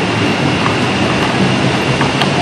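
Steady loud noise with a thin high whine running through it, and scattered light clicks as a whippet pup noses and paws the plastic pieces of a dog puzzle toy.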